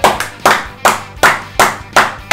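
Two people clapping their hands together in unison, in a steady rhythm of a little under three claps a second.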